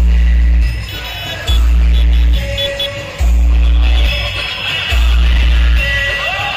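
Loud DJ music played through a procession sound system. Long deep bass notes, each close to a second long, come about every second and a half, with the rest of the track over them.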